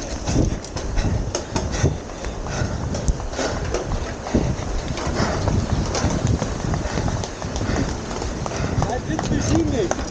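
Graziella bicycle rolling fast over a steel-grating bridge deck: the tyres and the grating set up a continuous clattering run of quick, irregular knocks, with the bike itself rattling.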